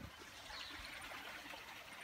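Faint, steady rushing hiss of outdoor background noise, with no distinct events.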